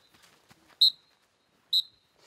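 Short, high-pitched electronic beeps repeating evenly about once a second, two of them here, with faint voices between them.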